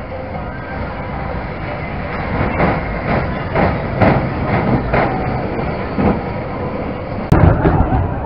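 Train of cars on a fairground ride rolling past on its track, with a run of clunks about twice a second as the cars go by. A single sharp, loud knock comes near the end.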